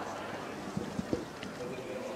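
Open-air background sound with faint voices, and three short knocks in quick succession about a second in.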